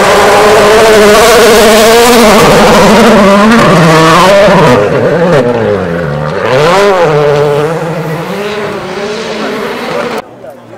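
Volkswagen Polo R WRC rally car's turbocharged four-cylinder engine running hard through a gravel corner, then revs dropping and climbing several times through gear changes as it pulls away and fades into the distance.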